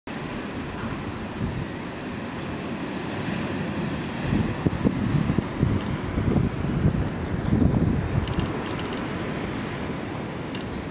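Wind buffeting the microphone in gusts over a steady wash of sea surf breaking on the rocks below; the buffeting grows heavier about four seconds in.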